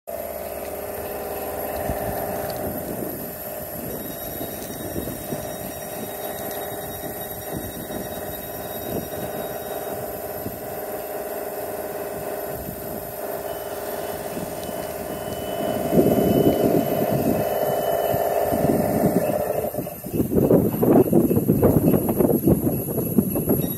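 ScotRail passenger train at a platform, running with a steady hum, then moving off. Its sound turns louder and rougher about three-quarters of the way through, dips briefly, and comes back loud near the end.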